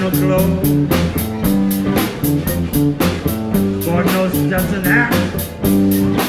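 Live blues band playing an instrumental passage: guitar over bass and drums, with a steady cymbal beat and a lead line that bends in pitch about five seconds in.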